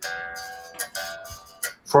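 Strandberg headless electric guitar strings strummed across with a pick held at an angle, its edge slicing through the strings; the notes ring and fade, with a fresh stroke about a second in and another near the end.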